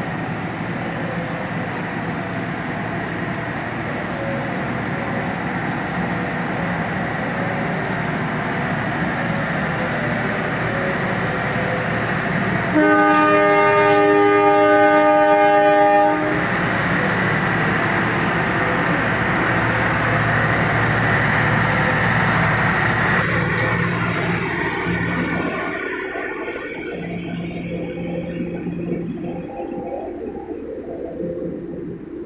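Steady running noise of diesel-engined passenger trains standing at the platform, with a train horn sounding once, held for about three seconds about halfway through, the loudest sound. The engine noise fades over the last few seconds.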